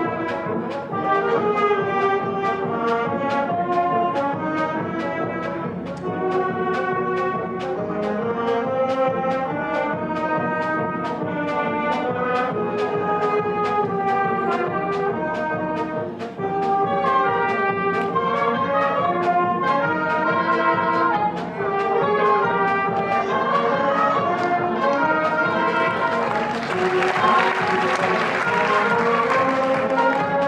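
Concert wind band playing: brass, clarinets and saxophones in sustained, moving melodic lines over a steady beat of about two pulses a second. Near the end a rising hiss swells up over the band.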